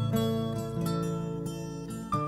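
Instrumental acoustic music with no singing: plucked acoustic guitar notes ringing out and slowly fading, with a few notes changing partway through.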